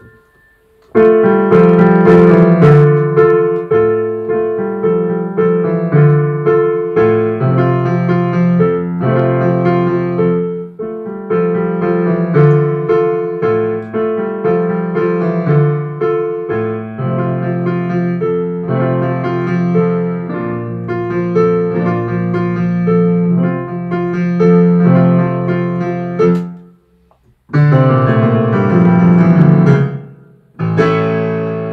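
Digital piano playing a solo piano piece of sustained chords over a moving low part. It starts about a second in and breaks off briefly a few seconds before the end, then resumes.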